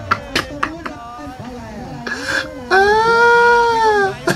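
A man laughing hard: a few short, sharp bursts in the first second, then a long, high-pitched wailing laugh held for over a second near the end.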